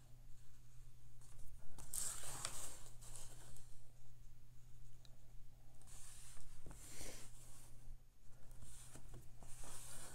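Soft swishing and scraping from watercolour painting, in several short bursts over a steady low hum: a round brush stroking paint onto cold-press watercolour paper, and the taped painting board being turned on the desk.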